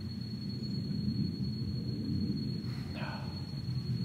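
Low, steady outdoor background rumble with a thin, steady high-pitched tone above it, and a faint short hiss about three seconds in.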